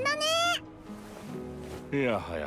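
A girl's high-pitched voiced exclamation from an anime episode, rising in pitch and lasting about half a second, followed by soft sustained background music.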